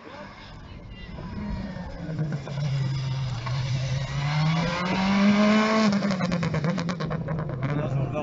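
Rally car engine at speed as the car approaches, its pitch climbing to a peak about five seconds in and then dropping as it comes off the throttle, with a rapid run of crackles from the exhaust during the drop.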